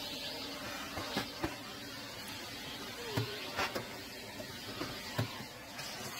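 Upright vacuum cleaner running steadily as its wand attachment sucks loose debris from the floors of a wooden dollhouse, with a few light knocks as the tool bumps the dollhouse.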